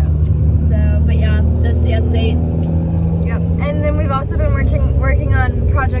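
Car engine and road noise heard from inside the cabin while driving: a steady low hum whose note changes about four seconds in.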